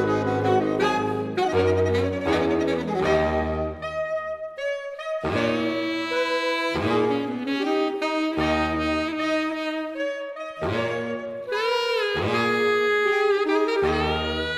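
A saxophone ensemble, soprano down to baritone saxophones, plays slow sustained chords. The low notes stop and restart in short phrases, and a held upper line swells with vibrato near the end.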